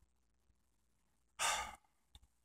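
A man sighing: one short, breathy exhale about a second and a half in.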